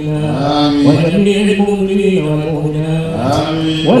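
A man chanting an Arabic supplication (dua) into a microphone, holding long drawn-out notes that step up and down in pitch, with short ornamented glides between them.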